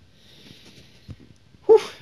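A man's loud breathy "whew" of relief about one and a half seconds in, after a faint steady hiss.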